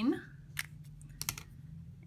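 A few light clicks of small art tools being handled on a tabletop: one about half a second in and a quick cluster just past a second.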